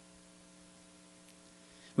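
Faint, steady electrical hum made of several steady tones, with no speech over it.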